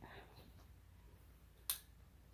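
A single sharp click near the end, a wall light switch being flipped off.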